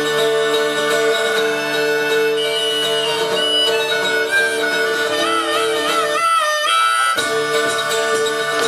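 Harmonica played over acoustic guitar, holding chords and then bending notes in a wavering run, with a short break about six seconds in.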